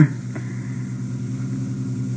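Steady low electrical hum with tape hiss on an old audio tape recording, in a pause between voices, with one faint tick about a third of a second in.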